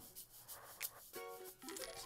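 Faint slot game sound effects: a few soft clicks as candy symbols drop onto the grid, and a short pitched chime a little over a second in.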